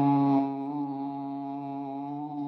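A man humming a long, steady "mmm" on one held pitch with his lips closed, a vocal warm-up on the letter M. It is a little louder for the first half second, then settles slightly softer.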